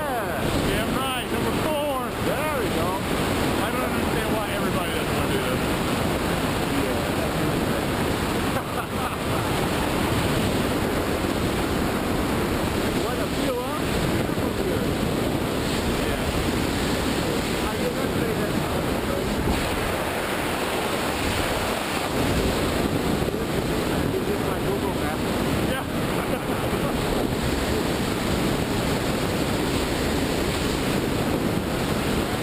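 Steady wind rushing over the microphone of a wrist-mounted camera during a tandem parachute descent under an open canopy.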